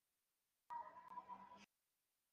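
Near silence, broken about a third of the way in by a faint, steady tone that lasts about a second.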